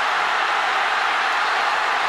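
Large football stadium crowd cheering steadily during a long pass play.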